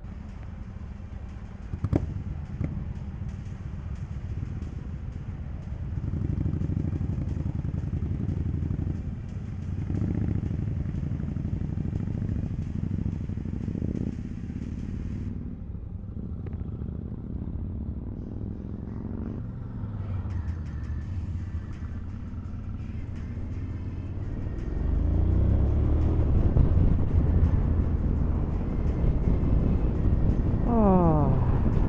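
Motorcycle engines, the Honda NC750X parallel twin and a Royal Enfield Super Meteor 650 alongside it, idling at a standstill, with a single knock about two seconds in. About twenty-five seconds in the engine sound grows noticeably louder.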